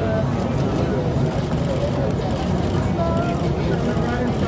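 Indistinct voices calling and chattering, overlapping, over a steady low hum.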